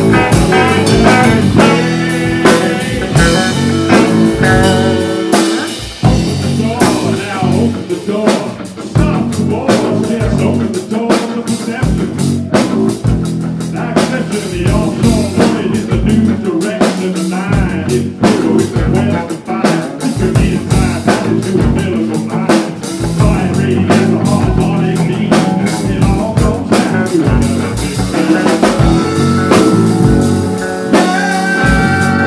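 Live band playing: electric guitars over a drum kit keeping a steady beat.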